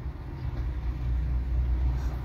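Low, steady vehicle rumble heard from inside a car cabin, swelling slightly through the middle.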